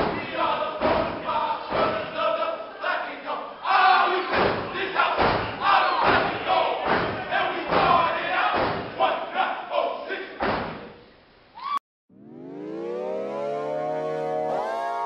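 Step team stomping and clapping while shouting in unison, with the crowd yelling along. About twelve seconds in, the sound cuts off abruptly and recorded music swells in with a rising sweep.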